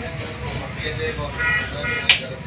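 Steady background noise of a busy shop with faint, indistinct voices, and a brief high-pitched tone about a second and a half in.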